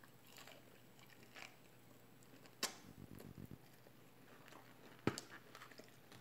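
Faint chewing of a fried chicken wing, with a sharp crunch about two and a half seconds in and another about five seconds in.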